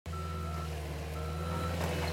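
Cat 289D compact track loader's diesel engine running steadily under a backup alarm that beeps about once a second, two beeps here.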